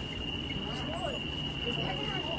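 A steady, unchanging high-pitched tone, with faint voices and low rumbling movement underneath.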